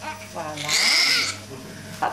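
Newborn baby crying: one loud, high-pitched wail starting about half a second in and lasting about a second, followed by quieter fussing.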